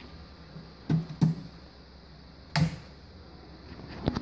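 Steady low electrical hum from a just-powered CNC 6040 control box and its variable frequency drive, broken by three short knocks, about a second in, just after, and again at two and a half seconds.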